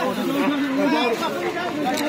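People talking: chatter of voices in conversation.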